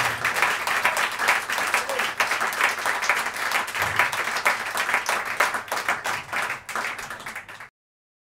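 Audience applauding after a live jazz performance, a dense patter of many hands clapping that thins out and fades, then cuts off abruptly near the end as the recording ends.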